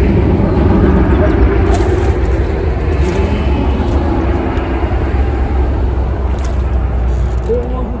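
A motor vehicle's engine droning steadily with a deep rumble, slowly fading away.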